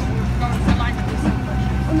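Steady low drone of a tractor engine pulling a passenger trailer, heard from aboard the trailer, with voices over it.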